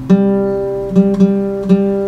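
Nylon-string classical guitar picking out a hymn melody one note at a time: four single notes plucked at a slow, uneven pace, each left ringing.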